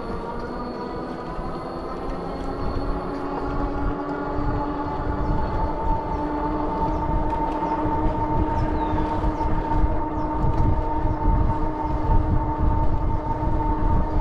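Wind rumble on a moving rider's microphone, with a steady hum of several tones that grows slightly louder.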